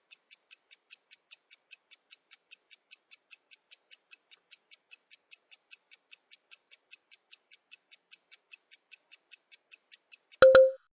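Countdown timer sound effect ticking quickly and steadily, about five crisp high ticks a second, while the countdown runs.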